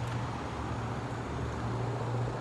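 Street traffic: a steady low engine hum with road noise, with no distinct event standing out.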